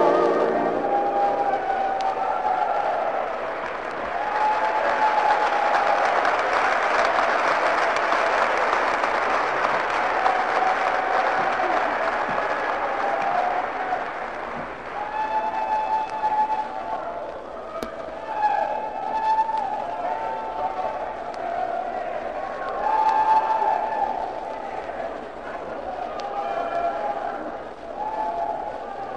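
A live audience applauding just after a song ends. The applause is strongest in the first half and thins out after about halfway, with voices calling out over it.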